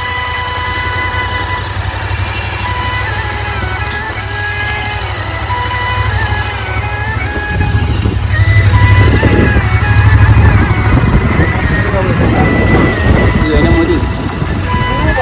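Background song music over the low rumble of a motorcycle ride and wind on the microphone. The rumble grows louder about halfway through and eases near the end.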